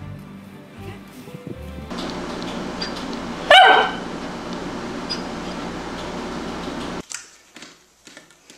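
A Tibetan Spaniel barks once, loudly, about three and a half seconds in, the pitch dropping through the bark, over a steady hiss of room noise.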